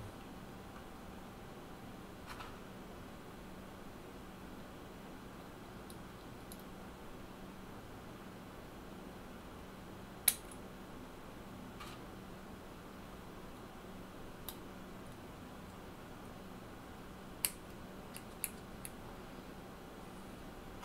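Small scissors snipping through a cotton wick: one sharp snip about halfway, then a few fainter snips and clicks near the end, over a faint steady low hum.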